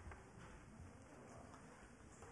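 Near silence: faint room noise in a large hall, with a few soft knocks and rustles.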